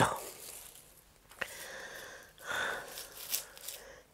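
Quiet, soft rustling of softened junquillo rush strands being handled in the hands, with a small click about a second and a half in.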